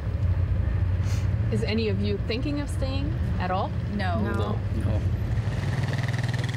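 Speech: a short question and a quick 'No!' in reply, over a steady low hum.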